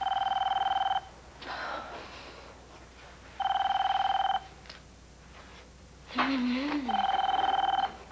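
Telephone ringing: three electronic rings, each a steady trill about a second long, coming roughly every three and a half seconds.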